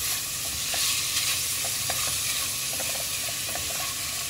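Diced chicken cubes sizzling steadily in hot oil in a pot, with a spatula stirring through them and making a few short scraping ticks.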